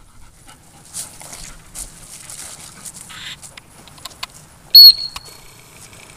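One short, sharp blast on a dog-training whistle, high-pitched and by far the loudest sound, about three-quarters of the way through: the whistle command for the dog to sit at heel. Before it, a dog panting softly.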